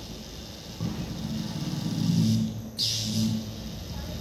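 Low electrical hum from high-voltage equipment powering up. It comes in about a second in, breaks near three seconds for a short hiss, then hums again briefly.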